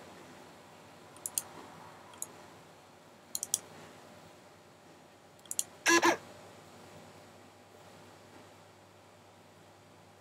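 Faint, scattered clicks of a computer being worked, then a louder double click about six seconds in.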